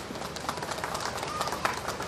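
Rain falling, an even hiss with scattered drops ticking irregularly.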